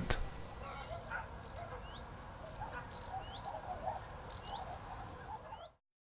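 Faint birds calling: a short rising chirp repeats about every second and a quarter over lower, scattered warbling calls, then the sound cuts off suddenly near the end.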